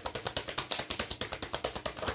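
Tarot deck being shuffled by hand: a rapid, even run of small card clicks, more than ten a second.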